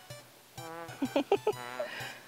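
A young goat bleating twice, each a short wavering call, over background music.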